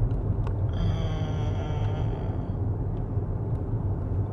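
Steady low rumble of a car's engine and tyres, heard from inside the cabin while the car is being driven.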